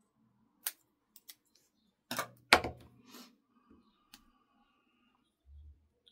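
Paper scraps and a glue stick being handled on a craft cutting mat: a scatter of sharp clicks and taps, the loudest about two and a half seconds in, and a soft low thump near the end.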